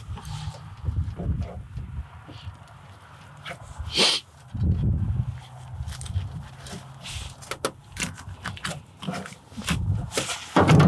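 Pheasant leg and thigh being cut and worked free at the hip joint with a knife: a run of small clicks, crackles and tearing of skin and sinew, with one sharp snap about four seconds in. Low rumbling sounds come and go underneath.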